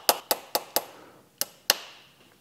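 A small hammer taps metal on metal on the freewheel buttons of a garden tractor's hydrostatic transmission pump: four quick taps, then two more after a short pause, each with a brief ring. The buttons had stuck and are being knocked down to free them.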